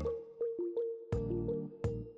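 Background music: short plucked notes over sustained low chords.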